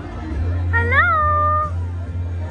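An infant's single coo, about a second long near the middle: a brief rise in pitch, then a slight fall, then held.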